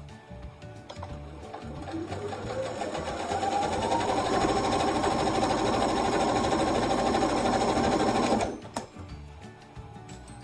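Domestic sewing machine stitching a chenille strip onto a quilt: the motor speeds up with a rising whine about two seconds in, runs steadily at full speed, then stops suddenly near the end.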